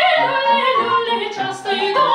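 Classically trained female voice singing a Russian folk song, with grand piano accompaniment.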